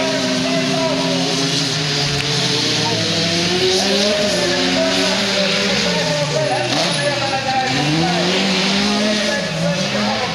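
Several autocross race cars' engines revving, their pitch climbing and dropping repeatedly through gear changes and throttle lifts as the cars lap a dirt track.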